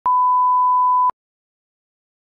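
A 1 kHz test-tone beep over colour bars: one steady pure tone lasting about a second, cut off sharply, then silence.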